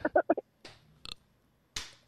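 A man's voice trailing off in a few short bursts, then a pause in a small room broken only by a few faint short noises.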